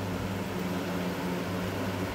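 A steady low machine hum with a faint hiss underneath, unchanging throughout.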